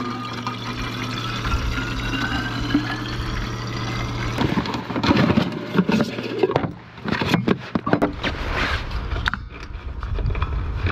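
Liquid stove fuel poured from a bottle into a red fuel bottle, a gurgling fill whose pitch rises steadily as the bottle fills, for about four seconds. Then comes irregular clatter and knocking as metal camp-stove gear is handled.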